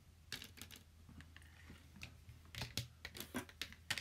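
Irregular light clicks and taps of small makeup items being handled and fumbled, a few early on and a quicker run near the end.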